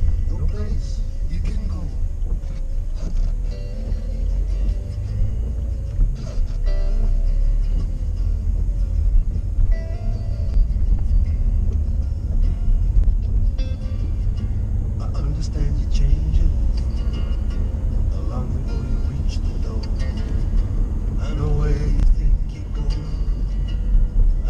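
A song with vocals playing on a car stereo inside a moving car's cabin, over the steady low rumble of the car driving.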